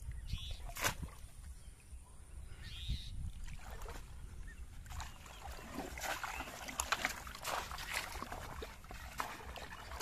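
Shallow pond water splashing as a person wades through it and plunges a bamboo polo fish trap down into the water, a busy run of splashes in the second half. A single knock about a second in.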